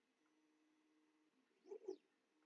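Near silence: room tone, with one brief faint sound in two small pulses near the end.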